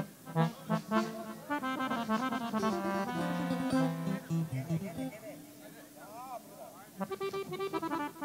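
Live accordion playing quick runs of notes. The playing drops for a moment around six seconds in, then comes back louder about seven seconds in.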